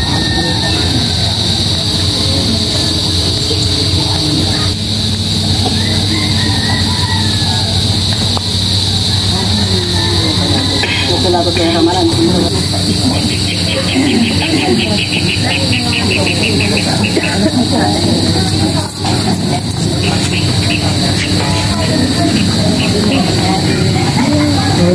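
Voices and music over a steady low hum and an even high hiss. About thirteen seconds in, a fast, even ticking joins for a few seconds.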